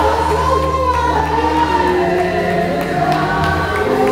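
A church congregation singing a gospel praise song together, many voices at once, over sustained low bass notes.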